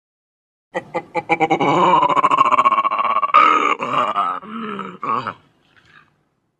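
Designed ape-man creature vocal effect, layered from real animal recordings. It starts with a rapid stuttering rattle about a second in, runs into one long, wavering pitched call, then breaks into a few shorter cries that stop about half a second before the end.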